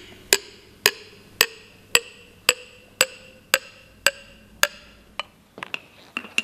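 A metal teaspoon tapping a ceramic mug of frothy liquid about ten times, evenly, roughly twice a second. Each tap rings briefly, and the ring rises slightly in pitch over the taps. The taps turn weaker near the end.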